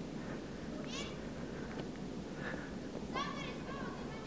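A few short, faint, high-pitched calls from a distant voice, the clearest a little after three seconds in, over a steady outdoor hiss.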